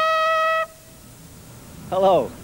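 Trumpet holding one long high note that ends the phrase and cuts off cleanly about two-thirds of a second in, followed by quiet. Right at the end a man's voice begins with a short exclamation that falls in pitch.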